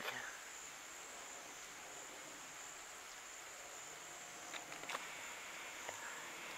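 Faint, steady, high-pitched insect buzzing, with a few soft clicks in the last second or two.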